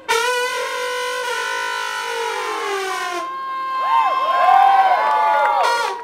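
Brass instrument soloing in a live band: a loud note enters sharply and slides slowly downward, then quick swooping bends up and down in pitch.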